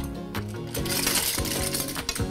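Background music, with a brief clatter of clam shells tumbling into a pot about a second in.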